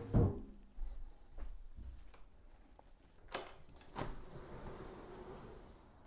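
Faint handling noise as a laptop and Arduino are picked up and carried off: a thump right at the start, then a few scattered light knocks.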